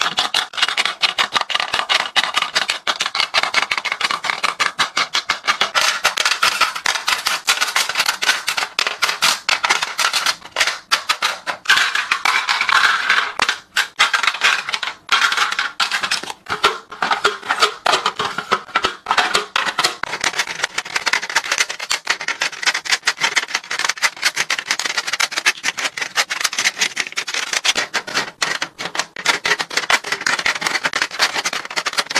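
Plastic cosmetic tubes and palettes being set into clear acrylic organizers: a close, nearly unbroken run of light clicks and taps of plastic on acrylic.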